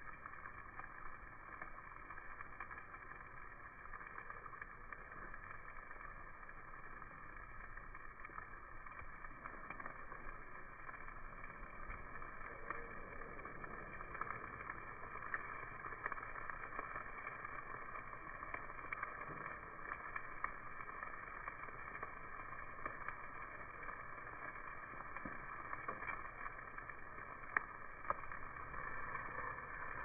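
Chicken pieces sizzling on a charcoal grill: a steady hiss with scattered crackles and clicks, more of them in the second half as metal tongs turn the pieces.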